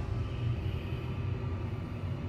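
Mowrey hydraulic elevator's pump motor running with a steady low hum, heard from inside the car.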